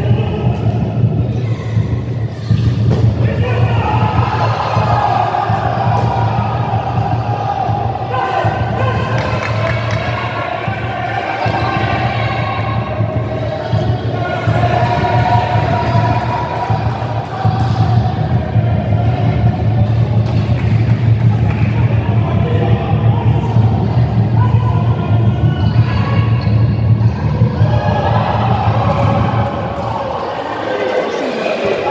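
Spectators in a sports hall singing and chanting continuously, with the thuds of the futsal ball being kicked on the court.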